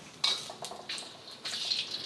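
Ginger sizzling softly in hot oil in a seasoned wok, with a single metal clink about a quarter second in.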